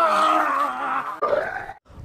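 A man's drawn-out groan, breaking briefly and stopping just before the end.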